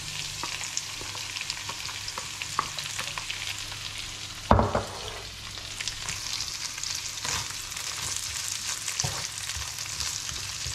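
Diced potatoes and ground beef with onions sizzling in a frying pan while a spatula scrapes the beef in from a bowl and stirs the mix, with many small clicks of utensil against pan. A single loud knock about four and a half seconds in.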